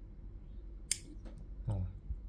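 A thin stainless-steel phone holder's metal strips snapping into place: one sharp metal click about a second in, followed by a couple of faint ticks.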